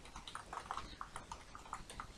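Computer keyboard being typed on: a quick run of about ten faint key clicks as a short word is typed.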